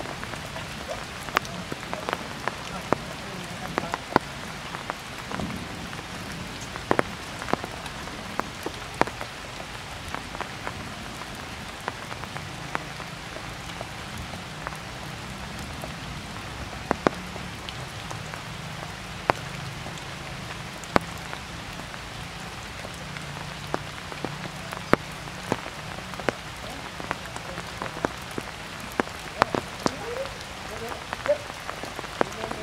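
Heavy rain falling steadily, with sharp ticks of individual drops striking close by at irregular moments.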